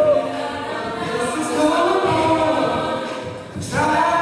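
Mixed-voice a cappella group singing a sustained vocal arrangement behind a male lead on microphone. The voices thin out and drop in level briefly a little over three seconds in, then come back in together strongly near the end.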